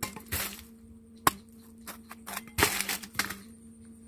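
A knife cutting through a young, unripe jackfruit: short scraping strokes, a single sharp crack about a second in, then a longer rough cutting sound near three seconds as the blade goes through the fruit.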